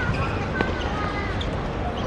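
Football match on a hard court: a single sharp knock of a ball being kicked or bouncing about half a second in, with children's distant shouts over a steady low rumble.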